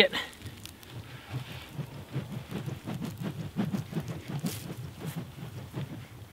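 Quiet, irregular rustling and soft swishes from two kali sticks being swung through a single-weave drill, with feet shifting on dry leaves.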